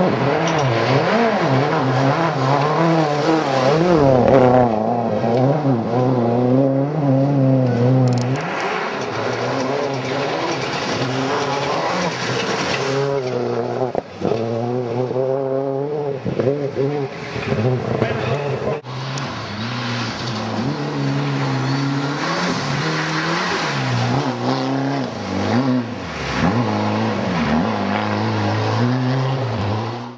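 Rally car engines at full throttle on a gravel stage, the pitch climbing and dropping over and over with gear changes and lifts off the throttle as the cars pass. There are abrupt breaks about 14 s in and again near 19 s.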